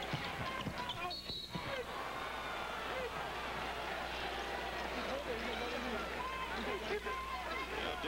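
Basketball arena game sound: a steady crowd din of many voices, with a ball dribbling on the hardwood court and sneakers squeaking.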